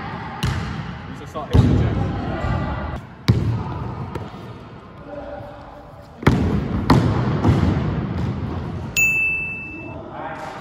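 Basketball bouncing on a sports-hall floor, dribbled in irregular thumps that ring around the hall. A short, steady high tone sounds about a second before the end.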